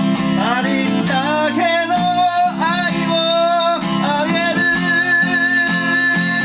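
Gibson Southern Jumbo acoustic guitar strummed steadily, with a harmonica in a neck rack playing a melody over it: notes that bend up into pitch and then hold, with one long high note held through the last second or so.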